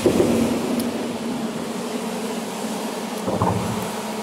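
A loud low rumble over a steady hum. It starts suddenly and swells again near the end.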